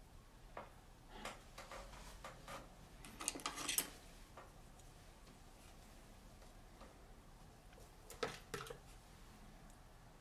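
Light, scattered clicks and taps of a thin metal sculpting tool being handled against a plastiline clay figure, with a quick run of clicks a few seconds in and another short run near the end.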